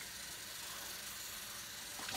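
Kitchen tap running steadily into the sink, a soft even hiss of water.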